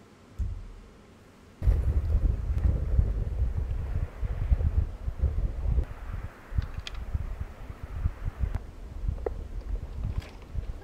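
Wind buffeting a microphone: a loud, gusty low rumble that starts about a second and a half in and keeps rising and falling irregularly.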